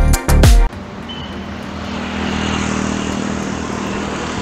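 Background music with a strong beat cuts off abruptly under a second in. It gives way to a steady rush of wind and road-traffic noise from riding a bicycle along a road.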